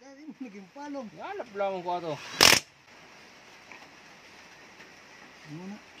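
Cordless impact wrench giving one short rattling burst on a bolt of a Honda GX390-type engine's crankcase, about two and a half seconds in.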